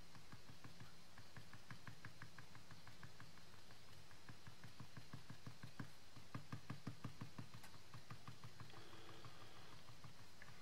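Faint, rapid tapping of a Colorbox Stylus Tool's tip dabbing dye ink onto glossy cardstock, about five light dabs a second, a little louder past the middle.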